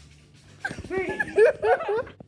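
Girls laughing: high-pitched, squealing laughter that starts a little over half a second in, swooping up and down in pitch, and breaks off suddenly at the end.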